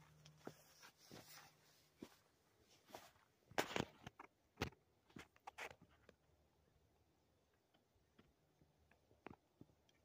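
Near silence with a few faint scuffs and clicks in the first six seconds, the loudest about three and a half and four and a half seconds in: footsteps on dirt.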